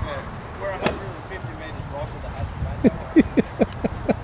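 Golf driver striking a teed ball: one sharp click about a second in. About three seconds in, a quick run of short falling calls, several a second, from an unseen source.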